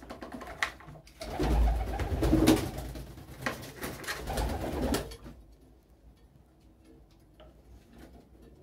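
Pigeons cooing close by, mixed with rustling and knocks, busiest and loudest from about one to five seconds in; after that only faint scattered sounds remain.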